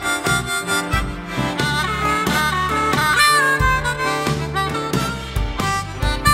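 Diatonic blues harmonica in C playing a solo phrase with notes bent and slid in pitch, over a backing band with a bass line and a steady drum beat.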